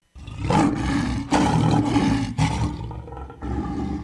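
A lion's roar sound effect: one long roar in several surges, lasting about four seconds.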